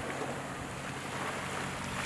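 Steady wind and sea wash at the shore, with a faint, steady low hum underneath.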